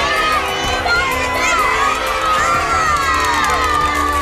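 A crowd of children shouting and cheering, many high voices overlapping and rising and falling in pitch.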